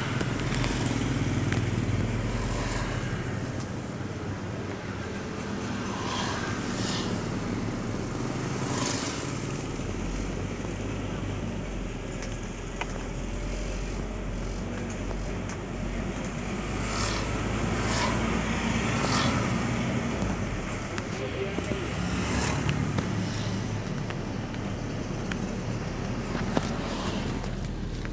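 Steady low hum of a vehicle engine with road and wind noise, heard from a vehicle moving along a town street, with passing traffic now and then.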